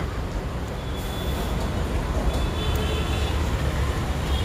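Steady low rumble of outdoor background noise with no clear engine tone, growing a little louder about halfway through.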